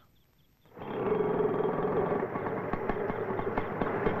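An auto-rickshaw engine running with a steady, rapid rattle, starting a little under a second in after a brief silence.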